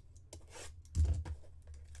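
A sealed, shrink-wrapped cardboard trading-card box being handled and turned over in the hands: light scattered clicks and scratches, with one dull thump about a second in.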